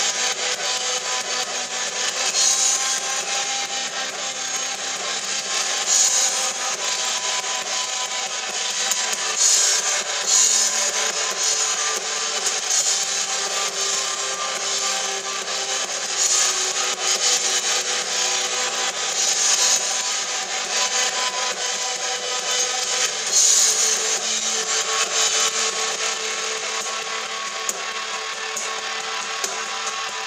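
Live rock band playing: electric guitar over a drum kit, with cymbal crashes every few seconds.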